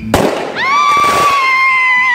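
A whistling firework: a sudden burst of noise, then about half a second in a loud, shrill whistle that holds steady and sinks slightly in pitch.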